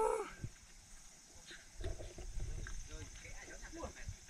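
A man's short wordless exclamation, rising in pitch, at the start, then faint scattered voices over a low rumble.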